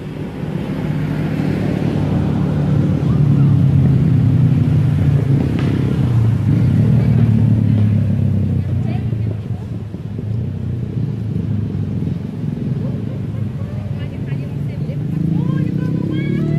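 A motorbike engine running nearby, a loud low hum that rises and falls in pitch. A few short high squeaks come in near the end.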